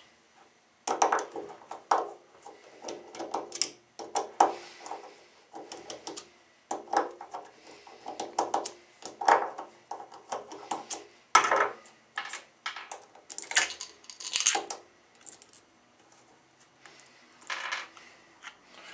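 A nut driver unscrewing the four small bolts from a JBL 2412 compression driver, with a run of short metallic clicks and clinks as the tool turns and the loose bolts are handled and set down on a wooden bench.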